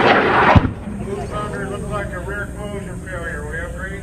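A model rocket's motor roaring just after lift-off, cut off abruptly by a sharp crack about half a second in, on a flight whose motor overpressurized and broke the rocket apart. Excited voices and whoops follow.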